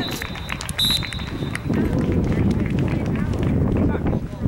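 Referee's pea whistle blown just after a goal: the end of one blast right at the start, then a second steady blast of nearly a second. A man shouts "yeah" at the start, and from about halfway a low rumbling noise takes over.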